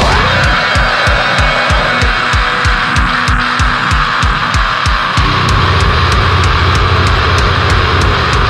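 Instrumental passage of a heavy metal song: electric guitar over fast, even kick-drum beats and regular cymbal hits, with no vocals. About five seconds in, the low end fills out into a steady, dense wall of sound.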